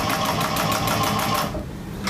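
Industrial walking-foot sewing machine stitching a box-cushion seam with bonded nylon thread, a fast, even run of stitches that stops about one and a half seconds in.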